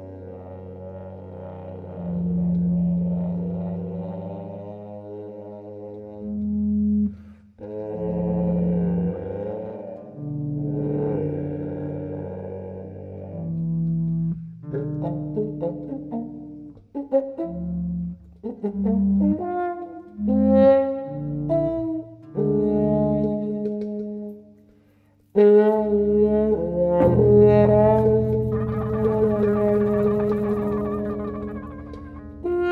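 A trombone, played with a hand-held mute in its bell, and a hollow-body electric bass play a slow jazz duet, with long held brass notes in phrases over a walking bass line. Both drop out briefly near the end, then come back louder.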